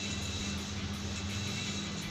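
A steady low hum over an even background hiss, with no distinct event.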